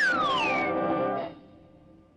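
Cartoon background music with a falling whistle glide at the start, sliding steeply down in pitch as the leaves drop. The music stops a little past halfway through.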